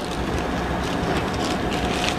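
Steady background noise of a commercial kitchen, with light rustling and clicking of a plastic zipper bag being handled and sealed shut.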